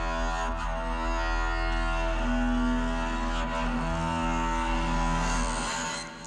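Instrumental passage of progressive rock music: held chords over deep bass notes, the chords shifting a couple of times, before the music stops near the end.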